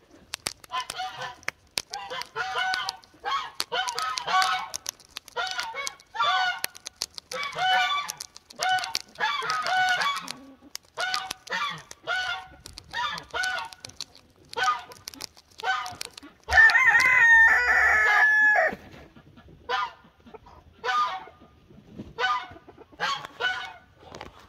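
Muscovy duck pecking and nibbling at a rubber Croc clog, heard as scattered sharp clicks, while poultry give repeated short honking calls. A longer, louder held call comes about two-thirds of the way through.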